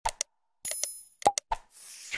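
Sound effects of a like-and-subscribe animation: quick clicks, a bell ding about two-thirds of a second in, two more clicks, then a falling whoosh near the end.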